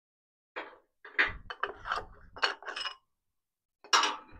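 Metal workshop parts and tools being handled: a run of about half a dozen clinks and knocks with short ringing, starting about half a second in.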